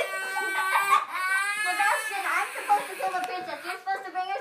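A young child's high-pitched, drawn-out wailing cry for about two seconds, followed by overlapping children's voices.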